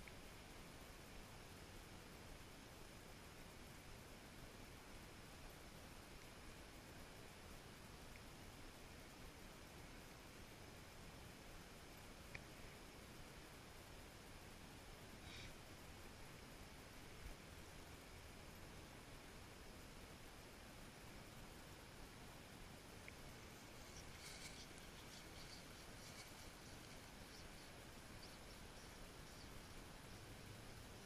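Near silence: a steady faint hiss, with a few faint clicks and a short run of faint ticks late on.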